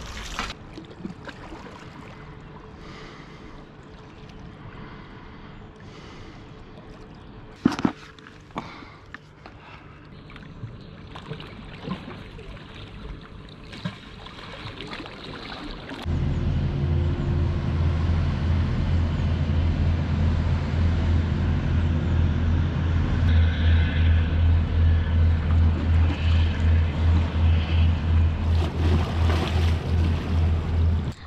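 Low, steady drone of a passing river cargo barge's diesel engine, with a slow regular throb, starting abruptly about halfway through and the loudest sound here. Before it, quieter water sloshing and clicks around a landing net at the shoreline, with one sharp knock.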